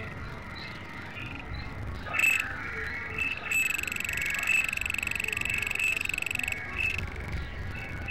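Layered experimental electronic music: short high blips repeating over a low rumble, then a steady high-pitched tone with a rapid flutter held for about three seconds, cutting off suddenly.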